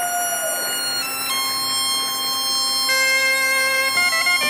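Instrumental Breton traditional dance music: long held reed and wind notes over a steady low drone, the melody stepping to a new note about a second in and again near three seconds.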